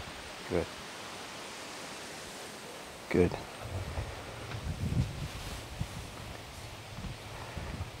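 Open-air background hiss, with irregular low rustling in the second half.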